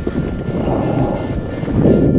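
Background music with a steady low rumble of wind on the microphone.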